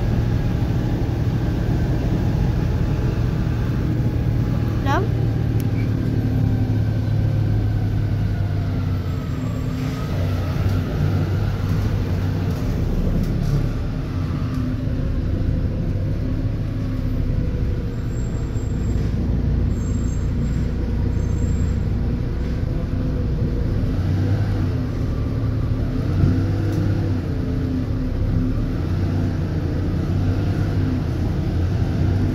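Volvo B290R city bus with Marcopolo Gran Viale body under way, heard from inside the cabin: the rear-mounted six-cylinder diesel runs with a steady low hum under road noise, its pitch shifting slowly with speed.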